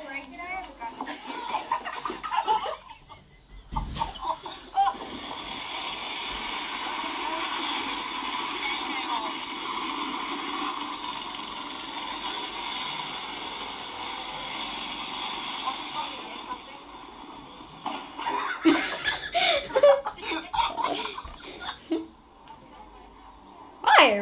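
Voices and laughter from amateur video clips, with a thump a few seconds in and a long stretch of steady droning noise in the middle before more voices and laughter near the end.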